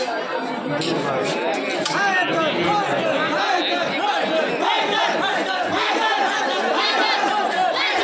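A large crowd of men chattering and calling out all at once, a steady dense hubbub of many overlapping voices.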